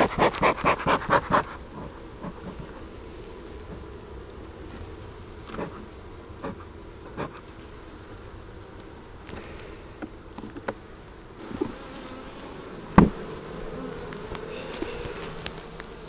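Honey bees buzzing in a steady hum over an open hive. In the first second and a half a bee smoker's bellows are pumped in a quick run of about eight puffs, and a few knocks and clicks on the wooden hive boxes follow, the loudest about 13 seconds in.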